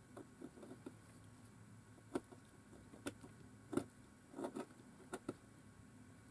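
Small knife paring slivers of wood from the tip of a twig dip-pen nib: faint, irregular clicks and short scrapes, a few clustered together, as each cut goes through.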